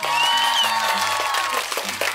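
A sudden burst of crowd applause and cheering, loud from the first instant, over light background music.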